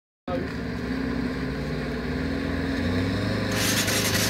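A 4x4 van's engine running as it drives into a river ford, with a sudden rush of splashing water starting about three and a half seconds in as the van pushes a bow wave.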